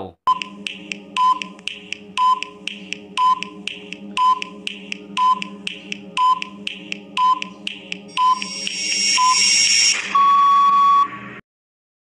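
Countdown-timer sound effect over a steady tense drone, with quick ticks and a short beep once a second for ten seconds. A hiss swells from about eight seconds in, and a steady buzzer tone sounds at about ten seconds to mark time up, then cuts off.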